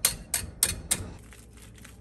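Shell of a hard-boiled egg cracking: a quick series of sharp clicks in the first second, then fainter crackling as the shell is peeled off by hand.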